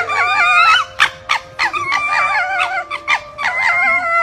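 Red foxes screeching at each other in an aggressive face-off: loud, high calls that waver up and down in pitch and break off again and again, typical of fox gekkering.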